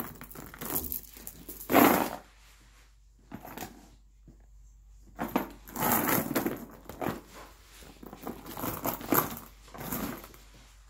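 Handling noise as a leather handbag is turned and moved about on its cardboard box: irregular rustles and bumps, loudest about two seconds in, with a short lull in the middle.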